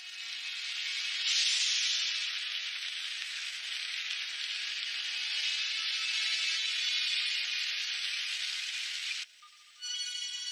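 A steady, loud hiss that builds over the first second, holds, and cuts off abruptly near the end, over faint background music.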